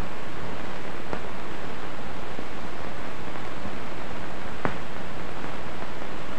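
Steady hiss of an old film soundtrack, with two faint clicks, about one second in and near the end.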